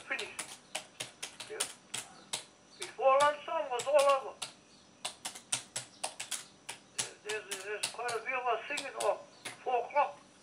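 Computer keyboard being typed on: quick, irregular key clicks throughout, with short pauses. A voice speaks briefly about three seconds in and again near the end, louder than the clicks.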